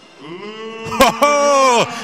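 A ring announcer's voice holding one long, drawn-out call, declaring the bout's winner, with a couple of sharp clicks about a second in.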